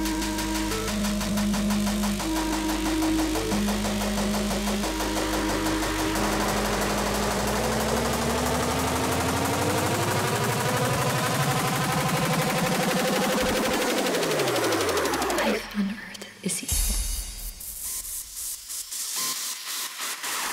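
Industrial hardcore drum and bass from a DJ mix: a loud, dense, distorted synth passage with held notes, then pitch sweeps rising and falling over several seconds. It breaks off about fifteen seconds in into a quieter, sparser breakdown, which begins to build again near the end.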